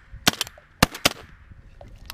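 Shotgun shots: a quick cluster of sharp cracks about a third of a second in, then two more single cracks near the middle.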